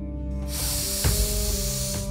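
A man blowing out a long breath of smoke, a hiss lasting about a second and a half, over background music with sustained notes.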